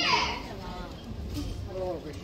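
Voices shouting at a boxing bout: one loud, high shout that falls in pitch at the start, then shorter calls, over the low noise of the hall.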